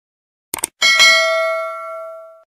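Subscribe-button sound effect: two quick mouse clicks about half a second in, then a notification-bell ding that rings on and slowly fades.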